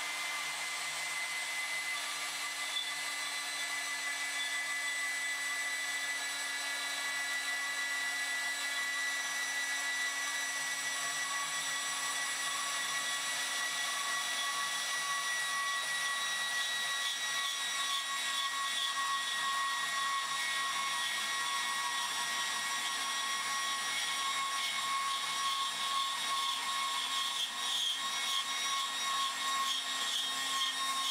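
Milwaukee HD18 BS 18-volt cordless portable bandsaw running under load as its blade cuts through a metal tube: a steady motor-and-blade whine that sinks slightly in pitch as the cut goes on, growing rougher and a little louder in the last few seconds as the blade nears the bottom of the tube.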